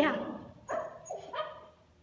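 A dog barking twice in quick succession, the two short barks a little over half a second apart.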